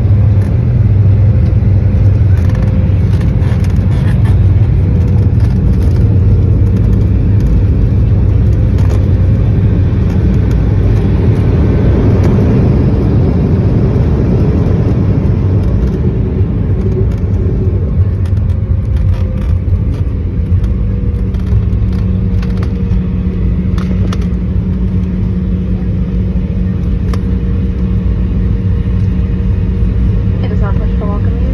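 Jet airliner cabin noise as the plane slows on the ground after landing: a loud, steady rumble of engines and wheels on the pavement, easing a little in the second half.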